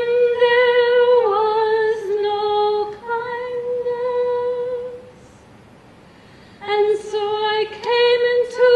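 A woman's voice singing unaccompanied in long held notes, stopping after about five seconds and starting again about a second and a half later.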